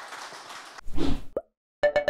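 A rushing hiss building into a loud low thump that ends in a short rising pop, then a quick chiming, stuttering jingle starting near the end: a logo-animation sound effect.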